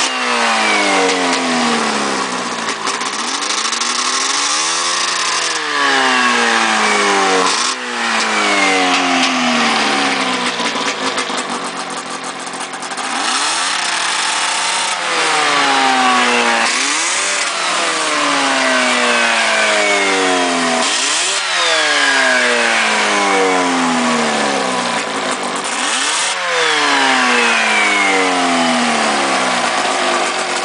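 Yamaha 540 two-stroke twin snowmobile engine revved by hand at the carburetor throttle, over and over. Every few seconds the revs jump up sharply, then die away slowly over a couple of seconds before the next blip.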